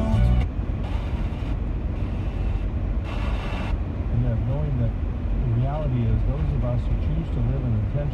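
Steady road and engine rumble inside a moving car with the car radio on: a music bed cuts off about half a second in, and from about halfway a man's voice talks on the radio.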